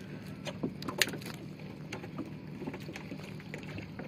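Small wooden outrigger boat afloat: water lapping at the hull over a steady low motor hum, with a few sharp knocks and splashes, the loudest about a second in.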